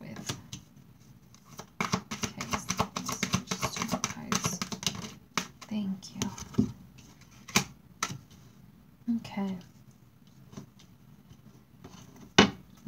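A deck of Romance Angels oracle cards being shuffled by hand, a quick run of rattling card clicks lasting about three seconds, followed by a few single cards being laid down on a wooden table, each a separate soft click.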